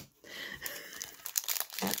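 Foil wrapper of a Panini Mosaic basketball card pack crinkling and crackling as it is handled and torn open.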